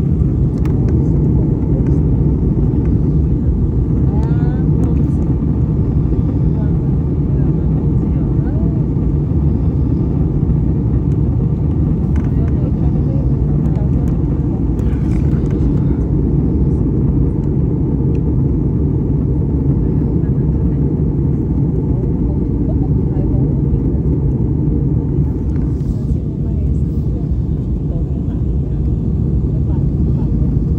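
Steady jet airliner cabin noise in flight: a constant low roar of the engines and airflow heard inside the passenger cabin.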